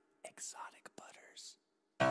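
A whispered voice saying a few quiet words over about a second.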